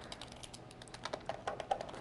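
Faint, irregular clicks and taps of a stylus on a drawing tablet as a curve is sketched, a rapid scatter of light ticks.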